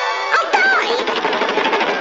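Orchestral cartoon soundtrack music over a fast, dense rattle, with a short exaggerated vocal cry about half a second in.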